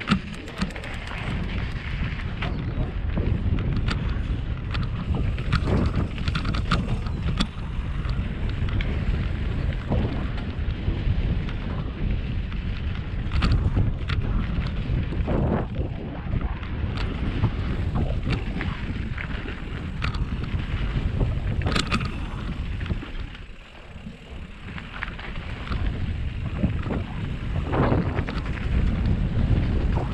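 Wind buffeting the microphone over the rumble of a mountain bike's tyres on a dry dirt trail, with scattered sharp clicks and rattles from the bike on the descent. It eases briefly about three quarters of the way through, then builds again.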